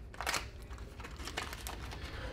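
Faint rustling with a few small scattered clicks: light handling noise.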